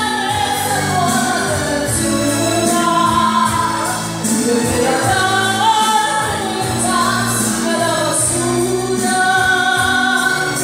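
A woman singing karaoke into a microphone over a backing track.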